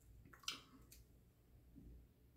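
A plastic bottle of water being tipped up to drink from, with a short wet splash or slurp about half a second in and a fainter one just after; otherwise near silence.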